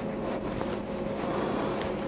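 White plastic rolling pin rolled over gum paste laid on a JEM cutter, pressing it into the cutter's edges and embossing; a steady rolling noise.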